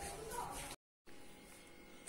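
Quiet room tone with a faint voice in the first moment, broken about three-quarters of a second in by a split-second of dead silence, then low steady room hiss.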